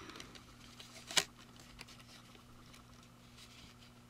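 Faint handling noise of a paper decal sheet being slid and pressed against a plastic model car body, with one sharp click about a second in.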